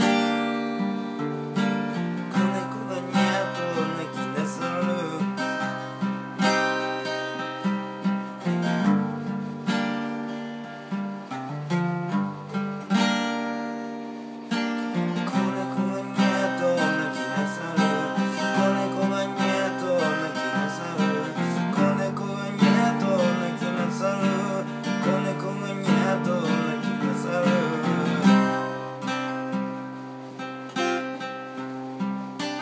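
Acoustic guitar music without singing: an instrumental passage of chords and plucked notes.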